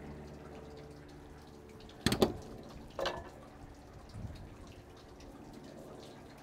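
Wet fish fillet and fillet knife handled on a cutting board: a sharp knock about two seconds in, a smaller one a second later and a faint one after that, over a low steady hum.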